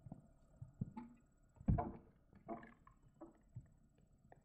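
Horse cantering on an arena's sand footing: a few separate dull thuds and breathy sounds roughly a second apart, the loudest near the middle.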